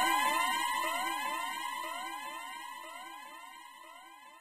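Electronic dub siren effect: a rapid string of rising sweeps over a steady tone, fading steadily away.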